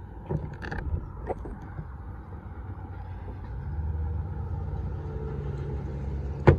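Parts being handled in a plastic parts organizer: a few sharp clicks and knocks in the first second or so. A low, steady hum builds from about halfway through.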